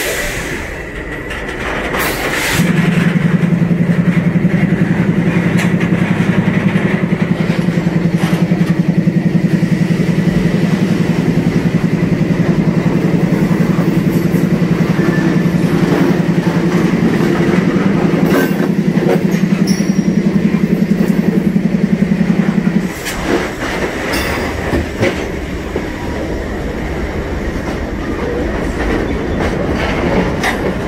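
Freight cars rolling slowly past on the next track, with wheel clatter and scattered knocks. A loud, low, rapidly pulsing hum starts suddenly a couple of seconds in and cuts off just as suddenly about three-quarters of the way through.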